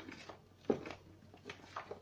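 Hand working flour and wet ingredients into dough in a plastic basin: a few short, soft rubbing and scraping strokes, the sharpest about two-thirds of a second in.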